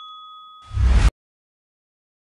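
A notification-bell sound effect's ding fading out, a few clear ringing pitches dying away. About two-thirds of a second in comes a short, loud burst of noise with a heavy low end, which cuts off suddenly into dead silence.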